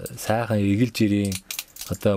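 A man speaking in conversation, with a few sharp, light metallic clicks near the start.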